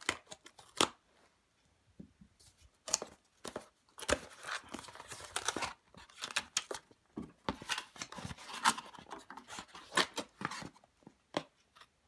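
Scissors snipping at a cardboard box in a few sharp clicks, then a denser run of cardboard flaps and paper tea packets being pulled open and rustled, with irregular scrapes and clicks.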